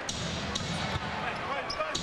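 Basketball game crowd murmur in an arena, with a basketball being dribbled on the hardwood court in a few short thuds.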